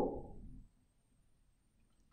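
A woman's voice trails off in the first half-second, then near silence for the rest.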